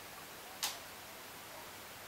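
Faint steady hiss of room tone, broken once, about two-thirds of a second in, by a single short, sharp click.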